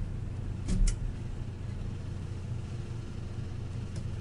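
A door shutting about a second in, a short low thud with a sharp double click of the latch, which the access-control system logs as the held-open door restored. A steady low electrical hum underneath, and a faint click near the end.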